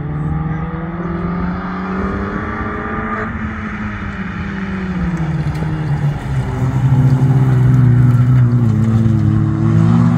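Stock Hatch autograss race cars with their engines revving hard on a dirt track. The engine note climbs, then drops about three seconds in, and grows louder from about seven seconds as the cars pass close by.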